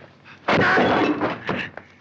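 Film fight sound effect of something smashing, with a shattering, breaking quality: a loud crash starting about half a second in and lasting nearly a second, then a shorter crash.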